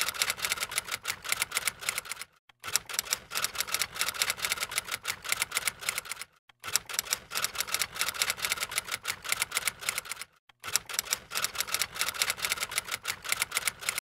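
Typewriter-style typing sound effect: rapid, even clicking that accompanies on-screen text being typed out letter by letter. It comes in four runs, broken by short pauses about two and a half, six and a half and ten and a half seconds in.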